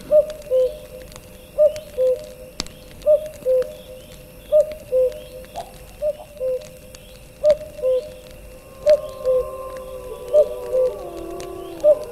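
A bird's two-note hooting call, a higher note then a lower one, repeated evenly about every one and a half seconds. Some held tones come in about three-quarters of the way through and glide down near the end.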